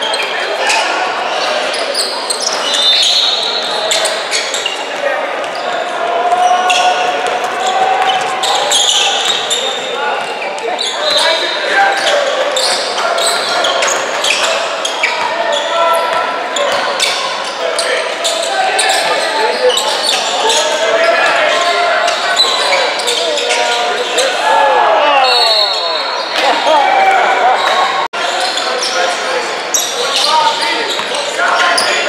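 A basketball being dribbled and bouncing on a hardwood gym floor during play, many sharp bounces in quick succession, with short high sneaker squeaks and indistinct shouting voices echoing in the large gym.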